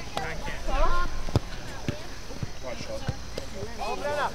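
Voices of spectators and players calling out at a youth soccer match, with a few short sharp knocks scattered through.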